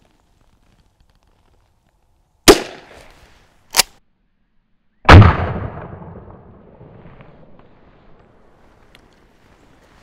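Shots from a Henry pump-action .22 rifle firing .22 Short: after a silent start, a sharp crack about two and a half seconds in, a shorter crack about a second later, and the loudest crack at about five seconds, which rings on and fades over about three seconds.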